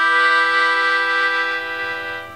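Melodica playing a long held chord, its steady reedy tones swelling in just before and fading toward the end.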